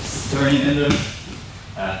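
A man's voice speaking briefly, then a pause and a short hesitant "uh" near the end, with a single knock just under a second in.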